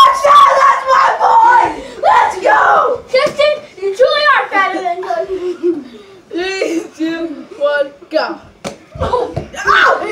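Boys' voices shouting and calling out excitedly during a game. There are sharp slaps among them, the clearest just before the end.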